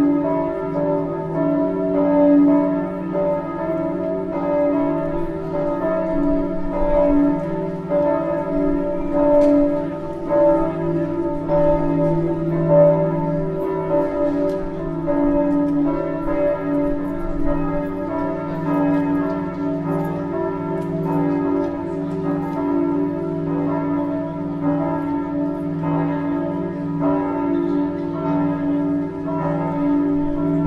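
Several church bells ringing continuously, their overlapping tones sounding together with frequent fresh strikes.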